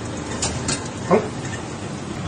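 A fan oven running with a steady whirr, with two light clicks about half a second in and a brief rising-and-falling pitched sound about a second in.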